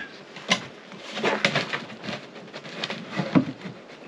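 PVC pipe fitting being pushed and worked into a tight rubber seal in the top of a plastic jerrycan: scraping and squeaking of rubber and plastic, with a few sharp knocks, the loudest about three seconds in.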